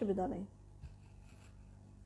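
Faint rustling of a cloth dress being handled and spread out by hand, with a small tick a little under a second in and a low steady electrical hum underneath.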